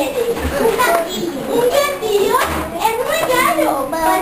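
A group of children chattering, many voices overlapping at once, with two short low thuds.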